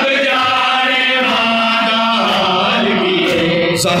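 Male voices chanting a noha, a Shia mourning lament, in long held notes, with one sharp beat near the end.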